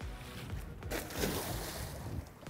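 A plastic stone crab trap with its float dropped over the side of a boat, splashing into the water in a noisy surge starting about a second in.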